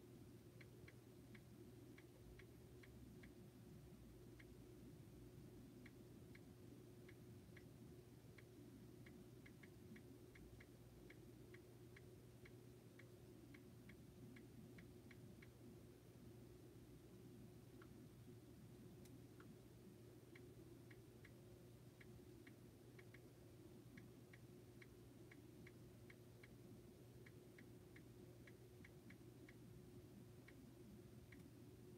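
Near silence with faint, irregular clicks of a smartphone's touch keyboard being tapped, coming in runs with a pause a little past the middle, over a low steady electrical hum.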